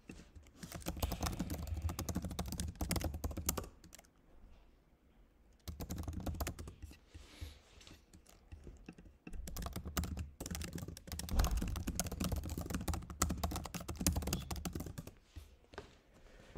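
Typing on a computer keyboard: three bursts of rapid key clicks, with short pauses about four and about nine seconds in.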